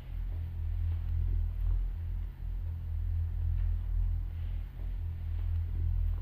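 A low, steady drone that swells and fades slowly, with nothing else above it.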